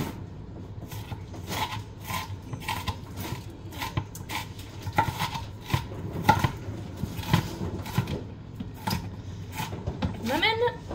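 Kitchen knife chopping an onion on a cutting board: a steady run of sharp knocks, two or three a second.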